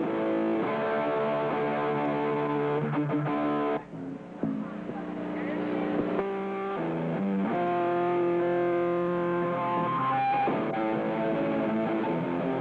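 A hardcore punk band playing live, loud distorted electric guitar chords to the fore. The band stops briefly about four seconds in, then comes back in.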